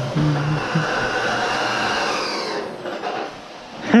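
Canister vacuum cleaner running on the floor, a steady motor rush with a whine, fading out about three seconds in.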